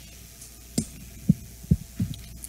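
Steady low hum with three short, low thumps about half a second apart, starting nearly a second in.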